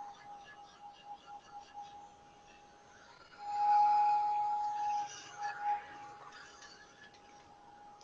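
Craft heat tool running, a faint steady blower whir with a thin whine, drying a coat of gesso on paper. It grows much louder for about a second and a half midway, then drops back.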